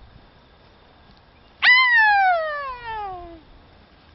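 A woman's loud shriek in the style of a tennis player's grunt, let out during a golf stroke. It starts high about a second and a half in and falls steadily in pitch over nearly two seconds.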